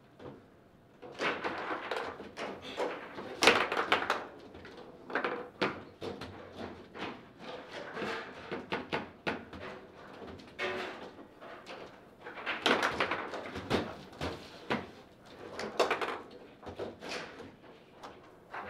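Table football being played: the ball clacking against the plastic players and knocking around the table, with the rods sliding and rattling, in quick irregular bursts of clicks and knocks that start about a second in.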